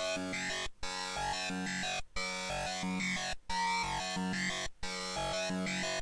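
Software synthesizer (Serum) playing a looped hi-tech psytrance line, its pitch and filter stepping about at random to a "talking synth" effect. It comes in phrases of about 1.3 s, each cut off by a brief gap.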